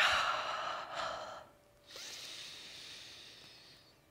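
A woman breathing deeply and audibly: two long breaths, each fading away, with a short pause between them about a second and a half in.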